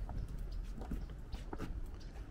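Footsteps on wooden boardwalk planks: a few soft knocks about half a second apart, over a low steady rumble.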